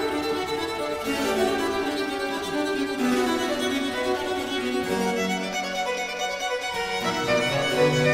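Baroque chamber music: two violins with viola da gamba and basso continuo of cello and harpsichord, playing a quick Allegro movement in G minor.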